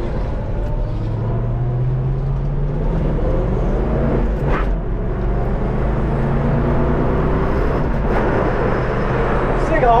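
A 1965 Ford Mustang's 289 V8 with Magnaflow dual exhaust, heard from inside the cabin, pulling under acceleration through its four-speed manual. The engine note rises over the first few seconds, breaks briefly about four and a half seconds in, then settles into a steady drone.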